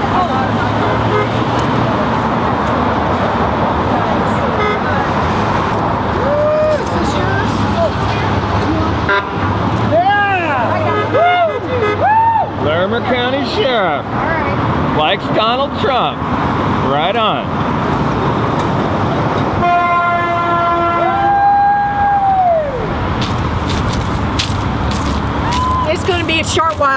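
Steady noise of road traffic passing, with voices calling out in short rising and falling shouts about halfway through. A vehicle horn honks for about three seconds later on.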